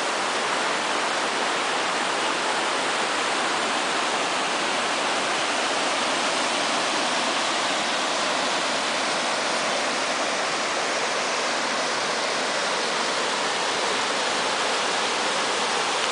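Creek water rushing and splashing over an old stone masonry weir and down small rocky rapids: a steady, even rush.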